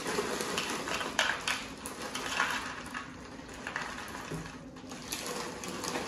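Plastic snack bag crinkling and small hard pretzels rattling and clicking as they are poured from the bag into a plastic measuring cup; near the end the cupful is tipped into a glass bowl.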